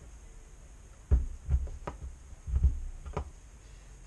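A shaft being pressed by hand into a pulley against a desk top: a run of about five dull thumps and knocks, starting about a second in and ending near the three-second mark.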